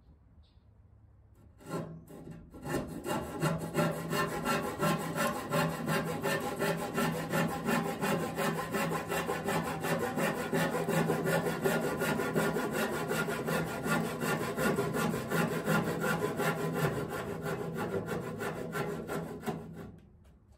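Handsaw cutting through a redwood 2x4, a steady run of quick back-and-forth strokes that begins about two seconds in.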